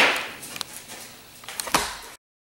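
Items being handled on a workbench: a sharp knock at the start, a faint click about half a second in, and another pair of knocks near the end.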